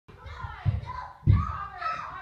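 Children's voices chattering indistinctly, with a couple of low bumps, the loudest a little over a second in.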